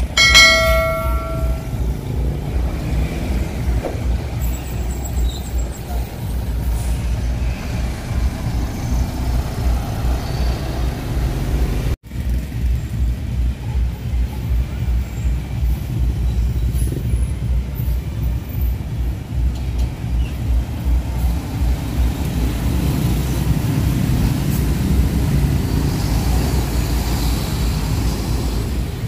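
Large coach buses' diesel engines running close by as they pull in, with motorbikes passing: a steady low rumble throughout, broken by a sudden break about twelve seconds in. A short bell-like ding rings in the first second or so.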